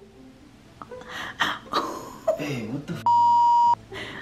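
A man groaning and mumbling as he wakes, then a steady high-pitched censor bleep lasting under a second, laid over a swear word; the bleep is the loudest sound.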